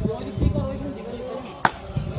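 A single sharp crack about one and a half seconds in, a cricket bat striking the ball, over voices in a crowd.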